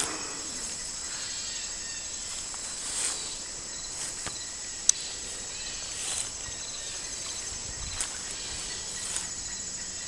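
Steady high-pitched insect chorus, with a few faint clicks and one sharper click about halfway through.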